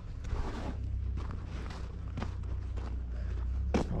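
Footsteps of a person walking across a gravelly yard, a few irregular steps over a steady low rumble.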